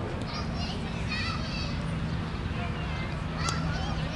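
Distant high-pitched shouts, three short bursts, over a steady low hum, with one sharp click near the end.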